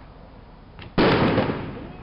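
A sudden loud bang about halfway through, trailing off in a rough, noisy rush over most of a second.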